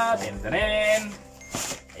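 A man's voice: a drawn-out word ends right at the start, then another long pitched vocal sound about half a second in, with a brief rustle near the end.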